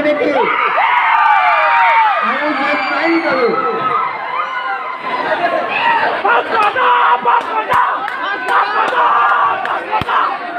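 A large crowd cheering and shouting, many voices calling out at once in overlapping rising and falling shouts.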